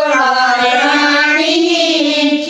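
A woman singing a Haryanvi devotional folk song in long, held notes that bend gently in pitch.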